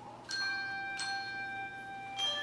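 Handbell choir ringing: two chords struck, about a third of a second in and again about a second in, their bright tones left to ring on together.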